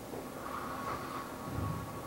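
Faint movie-trailer soundtrack playing quietly from the presentation computer, barely audible over the room noise, with a low rumble near the end.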